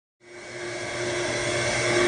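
A steady machine hum and whir fading in about a quarter second in and slowly growing louder, with a few steady tones running through it.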